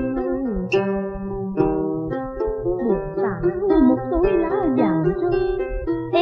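Instrumental passage of Vietnamese cải lương (tân cổ) music on a pre-1975 record: plucked-string accompaniment with notes that bend and slide, played between sung lines.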